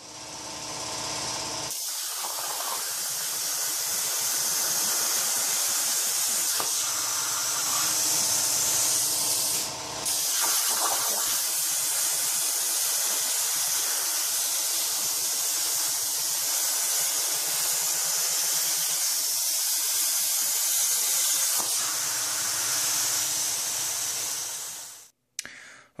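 Hypertherm plasma torch on a Torchmate CNC table cutting quarter-inch mild steel with 45 amp shielded consumables: a loud, steady hiss. The arc breaks off briefly about ten seconds in, then resumes and stops shortly before the end.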